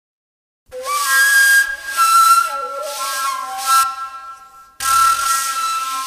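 Saluang, the Minangkabau bamboo end-blown flute, playing very breathy, hissing held notes with slow pitch bends in the style of a ratok lament. There are three phrases, the first starting about a second in, each ending in a fade before the next begins.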